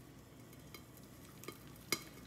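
Beaten eggs and spinach poured into a hot, oiled frying pan, giving a faint, soft sizzle. A single sharp click sounds near the end.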